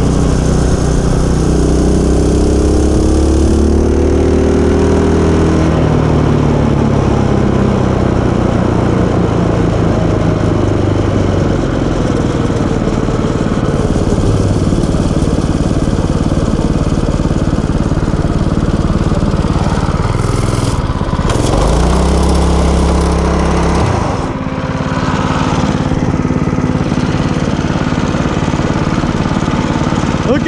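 Small gasoline engine of a mini bike running under way, with wind noise on the microphone. Its pitch slides down over the first few seconds, drops briefly about 21 seconds in, then climbs back as the throttle opens again.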